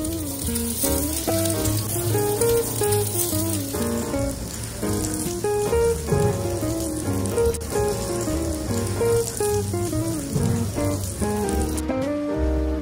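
Background music with a melody of held notes, over a steady sizzle of Hida beef cooking on a tabletop iron grill plate. The sizzle cuts off abruptly near the end.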